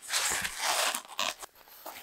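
Packing material crinkling and tearing as it is pulled apart by hand: a dense rustle for about a second and a half, with a few sharper crackles near the end of it.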